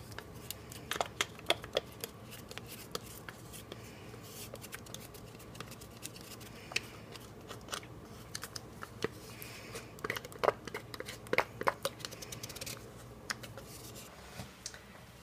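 Spoon scraping soft yogurt out of a plastic cup into a ceramic bowl: irregular small clicks and scrapes, busiest about a second in and again from about ten to twelve seconds.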